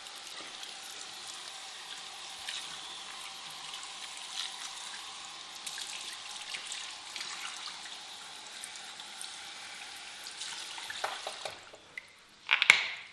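Water running from a salon shampoo sink's hand-held sprayer through a man's hair and into the basin, a steady hiss. It eases off near the end, followed by a few light clicks.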